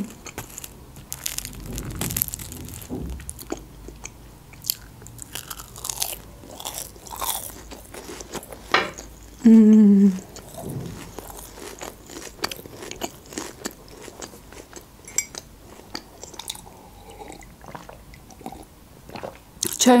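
Close-up chewing of chocolate- and nut-topped lokma (fried dough balls), with crunchy bites and small wet mouth clicks throughout. A short hummed "mm" of approval comes about ten seconds in.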